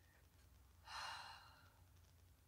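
A woman's single breathy sigh, about a second in, against near silence.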